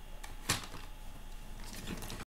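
A plastic cassette case being handled: a sharp click about half a second in and a fainter one near the end.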